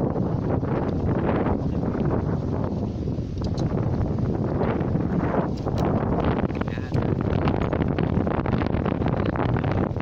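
Wind buffeting the microphone, a steady low rumble, under people talking.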